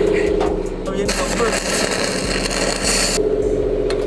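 A steady engine hum, cut off about a second in by roughly two seconds of loud hissing from a metal-cutting torch; the hum returns when the hiss stops.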